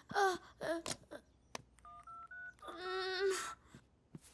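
Phone keypad beeps as a number is dialled: three short tones, each a little higher than the last, about two seconds in. Shortly after comes a brief held pitched tone.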